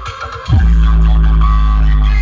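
Loud dance music played through a DJ speaker-stack rig: the beat drops out briefly, then about half a second in a heavy bass hit slides down in pitch and a deep bass note is held.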